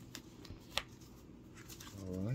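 Paper being handled by hand: a few short, crisp rustles and flicks, the sharpest a little before halfway.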